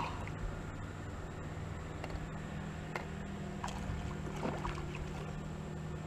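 Steady low hum from the bass boat, with a few faint splashes and taps about three and four and a half seconds in as a barely hooked smallmouth bass thrashes at the side of the boat.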